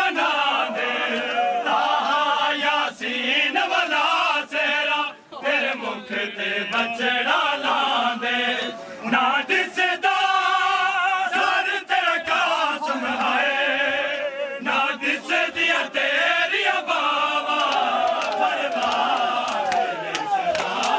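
A group of men chanting a Punjabi nauha (Muharram lament) together, loud and continuous. Sharp slaps of hands on bare chests (matam) run through it.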